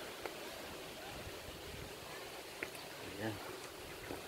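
Faint, steady outdoor background hiss with a couple of faint clicks.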